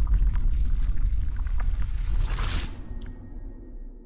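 Logo intro sound effect: a deep bass rumble with scattered crackling clicks and watery splashing, swelling to a brief rush of hiss about two and a half seconds in, then fading away.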